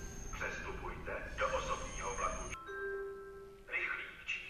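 Railway station public-address announcement from the HaVIS system: a voice speaking over a low background rumble. About two and a half seconds in, the rumble cuts out and the announcement gong chimes a few steady tones. A new announcement voice then begins near the end.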